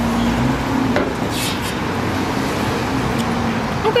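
Steady car road noise, with a light click about a second in and a short hiss soon after.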